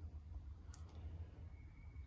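Quiet pause: a steady low background hum with one faint brief click a little under a second in.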